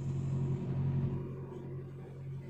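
A steady low mechanical hum, with a faint hiss near the start.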